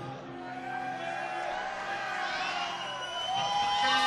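Concert audience cheering and whooping, with several long shouts that glide up and down in pitch.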